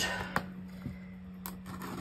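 Light handling sounds: a few soft clicks and taps as a small plastic tape cutter is brought up to the edge of a cardboard box, the sharpest about one and a half seconds in, over a faint steady hum.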